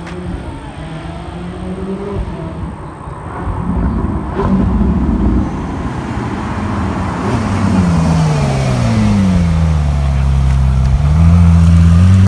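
Ferrari 458 Italia's 4.5-litre V8 running as the car approaches, its note falling in pitch from about eight seconds in as it slows, then levelling off and loudest near the end as it pulls up close.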